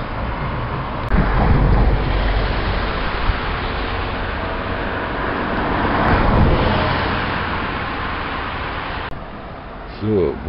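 Urban road traffic: a steady wash of passing vehicles with a low rumble. It swells as vehicles go by about a second in and again around six seconds, then drops off abruptly near the end.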